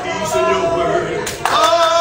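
Congregation voices in worship, singing and calling out, with notes held steady in the second half. A few hand claps sound about a second and a half in.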